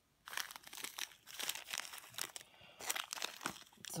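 Small plastic zip-lock bags crinkling as they are handled, in a string of irregular crackles that begins a moment in.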